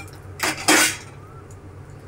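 Kitchen utensils knocking: a small click, then a brief louder clatter about three-quarters of a second in, as a wooden spatula is picked up from a steel plate holding a spoon.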